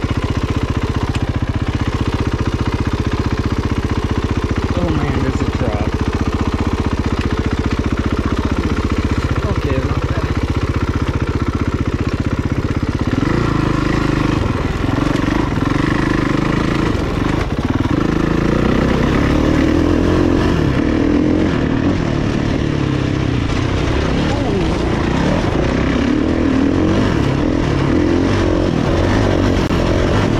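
Kawasaki KX450F dirt bike's single-cylinder four-stroke engine running at low, steady revs as the bike rolls down a steep dirt descent under hard front braking. About halfway through, the revs rise and fall repeatedly as it accelerates along the trail.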